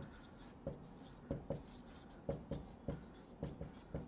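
Marker pen writing on a whiteboard: a string of short, irregular taps and strokes as letters are formed, faint.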